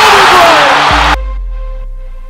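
Game-broadcast audio under a music track: loud arena crowd noise and a commentator's drawn-out voice, cut off abruptly about a second in. A held music note with a fading bass follows.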